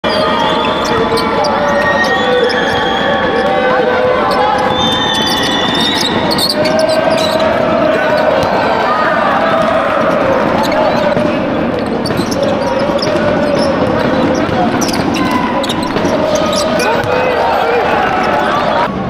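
Live basketball game heard from courtside: sneakers squeaking on the court floor and the ball bouncing, with players and spectators calling out throughout.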